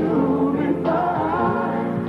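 Male pop vocal group singing live, several voices together over the band's backing.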